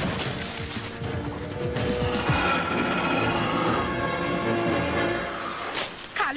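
Cartoon action soundtrack: a dense rush of crashing and rumbling effects for about two seconds, giving way to music with steady held notes.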